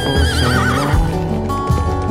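A horse whinnying near the start, one quavering call under a second long, over background music with a regular low beat.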